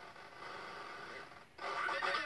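Circuit-bent Playskool toy's sound chip playing its sound slowed right down and low in pitch, set by a voltage-divider pitch-bend knob. It drops out briefly about one and a half seconds in and comes back louder.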